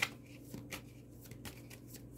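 Tarot cards being shuffled and handled by hand: a run of short, sharp card clicks and flicks, the sharpest right at the start.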